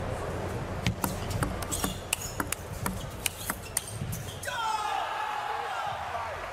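Table tennis doubles rally: a quick run of sharp clicks as the ball strikes the rackets and the table for about three seconds, then shouting and cheering from about four and a half seconds in as the point ends.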